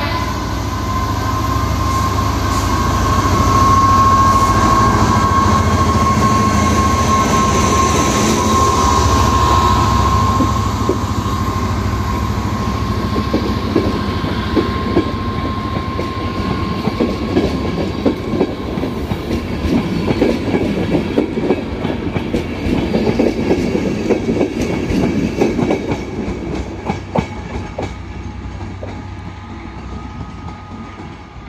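Class 67 diesel locomotive 67014, with its two-stroke EMD V12 engine, passing at speed with a rake of coaches, a steady whine loudest in the first few seconds. The coaches follow with a rapid clickety-clack of wheels over rail joints, which fades near the end as the train draws away.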